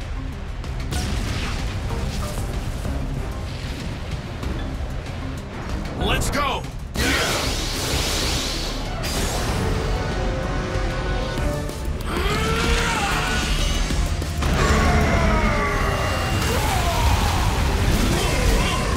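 Dramatic cartoon battle score with explosion and impact sound effects over it, a sudden loud hit about seven seconds in, and wordless vocal cries gliding up and down in the second half.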